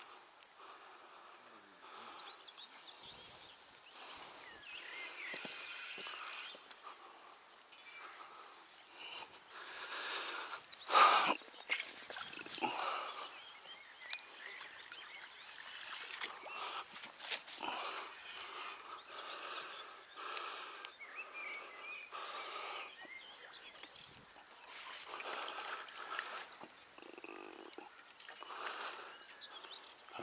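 Intermittent water splashes from a hooked fish being played at the surface and drawn toward a landing net, over a faint outdoor background; the loudest splash comes about eleven seconds in.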